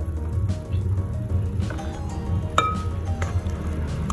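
Background music, over which a plastic spoon stirring thick batter knocks and clinks against a glass mixing bowl, the clearest clink with a short ring a little past halfway.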